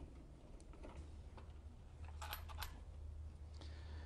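Faint clicks and taps of a screw and the emergency flasher relay being handled in a car's dashboard, with a short cluster of ticks about two seconds in, over a low steady hum.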